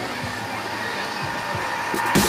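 Steady rush of river rapids pouring over rock slabs.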